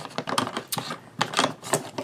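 A rapid, irregular run of small clicks and taps as wooden-handled bead-rolling tools and a plastic glue bottle are handled on a craft table.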